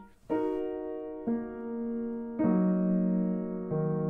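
Piano played with the right hand alone: four chords in turn, inversions of an E-flat minor chord, each held ringing until the next one comes in.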